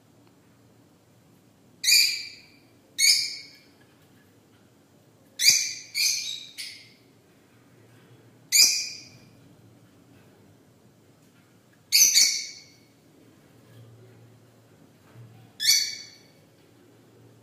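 A small white parrot calling: about seven short, shrill calls spread through, some in quick pairs, over a faint low hum.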